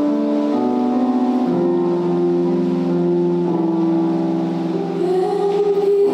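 Electronic keyboard playing a slow introduction of long held chords, changing every second or two; a female voice starts singing with it about five seconds in.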